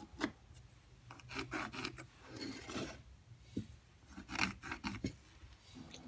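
Faint, irregular scratching and rubbing strokes on a wooden blank, in several short runs, as the wood is handled and marked out.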